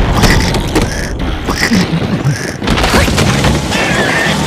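Cartoon soundtrack of steady rain noise, with a run of short, repeated comic sound effects about every half second over the first two and a half seconds.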